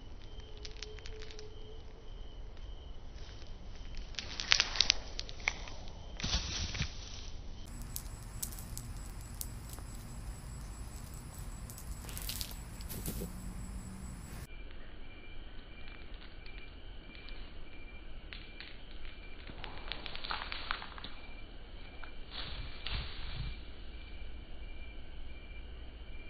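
Outdoor ambience with a few short rustles and soft clatters from a nylon cast net being handled, thrown and landing on grass, with its lead line and weights, over a faint repeating high chirp.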